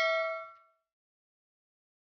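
The ringing tail of a bright bell-like 'ding' sound effect, fading away within the first second.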